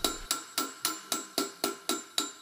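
Smoothing hammer tapping an annealed aluminium half-bowl in quick, even blows, about four a second, each with a short metallic ring: planishing the rough, dented shell smooth.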